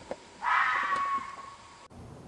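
A red fox's scream, the call named for the vixen but also used by males: one loud cry starting about half a second in, fading over about a second and cut off near the end.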